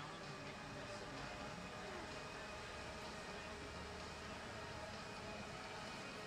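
Ice resurfacer running on the rink, a faint low steady hum under the hiss of the arena.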